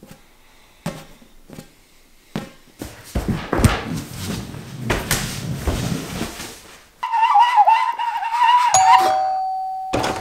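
A few dull thumps as an exercise ball is tossed and caught, then several seconds of heavy thudding and scuffling. Near the end, a doorbell rings with a single sustained ding.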